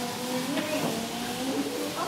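Young children's voices in a classroom, drawn-out and wordless, rising and falling in pitch.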